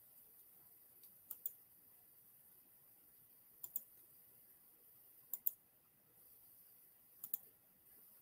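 Four pairs of short, faint clicks, each pair quick in succession, spaced about two seconds apart, over near silence.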